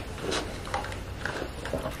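A drink sipped through a plastic straw from a reusable cup: a few faint, short sips and swallows.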